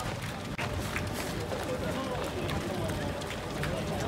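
Footsteps of a large crowd of marathon runners on the road, a steady run of many overlapping footfalls, with indistinct voices of runners and spectators mixed in.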